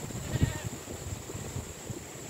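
A goat bleats once, briefly and faintly, about half a second in, over low uneven thuds from the moving camera.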